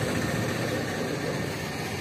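An engine running steadily: a low, even hum under background noise.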